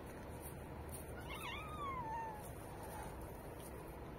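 A stray cat meowing once: a single drawn-out meow of just over a second that rises in pitch and then slides down.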